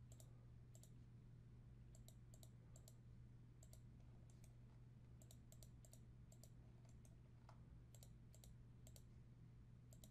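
Faint computer mouse clicks, many of them in quick pairs and spaced irregularly, over a steady low hum.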